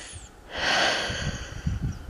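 A person breathing heavily close to the microphone, with a long breath beginning about half a second in.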